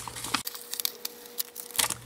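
Paper crackling and rustling as a sheet of repositionable-adhesive masking paper is peeled off its backing: a cluster of short crackles at first, a quieter stretch, then a few more crackles near the end.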